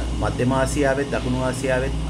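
A man talking in short phrases over a steady low hum.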